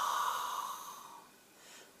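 A woman's long, slow exhale through a narrowed back of the throat, part of a Hawaiian breathing exercise: a breathy hiss that fades away a little over a second in.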